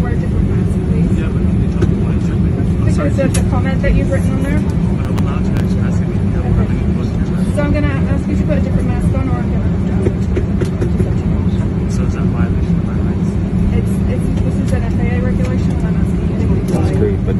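Steady low rumble of airliner cabin noise, with faint, unintelligible voices of crew and passengers over it.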